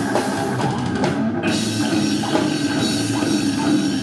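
Brutal death metal band playing live: heavily distorted electric guitar over a full drum kit, loud and dense.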